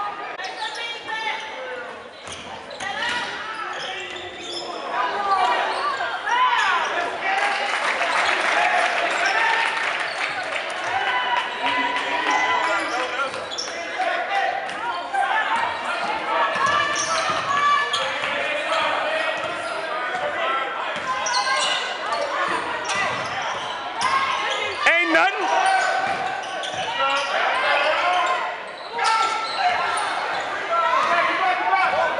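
Basketball dribbled on a hardwood gym floor, with the voices of players and spectators talking and calling out throughout, echoing in the large gym.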